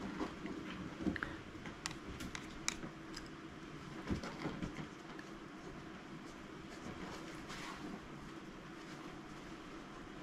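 Faint room hum with scattered small clicks and soft taps, most of them in the first half, as a paintbrush works gouache into a square on paper.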